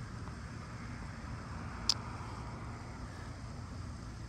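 A putter striking a golf ball once: a single short, sharp click about two seconds in. Under it runs a steady low rumble of road traffic.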